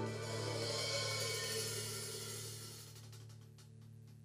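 Live rock band's final chord ringing out with a cymbal wash over it, everything fading away over a few seconds as the song ends.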